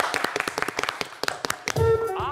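Hand clapping in applause, a quick run of many claps. Near the end, a loud pitched musical note comes in as music starts.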